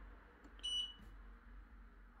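The control panel of a Sharp ES-HFH814AW3 washing machine gives one short, high electronic beep about half a second in as the program selector dial is turned to the next wash program.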